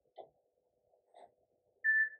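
A single short electronic beep near the end, one steady high tone, from the endoscopy processor unit as its front panel is operated.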